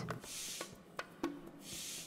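Axiom bicycle floor pump being worked by hand: two faint hisses of air about a second apart, with a few light clicks between.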